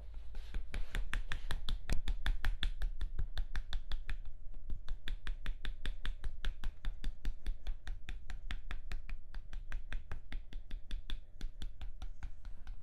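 Wooden stick tapped rapidly and evenly against a person's arm in a massage, about five sharp taps a second, over a low steady hum.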